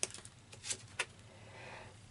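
Playing cards being handled and drawn from a deck: several light clicks and snaps of card edges in the first second, then a soft sliding rustle as a card comes out.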